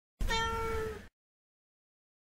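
A domestic cat meowing once, a single call of under a second at a fairly even pitch, cut off abruptly.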